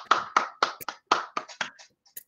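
Hands clapping in quick applause, about five claps a second, heard through a video-call microphone. The claps grow fainter and die out near the end.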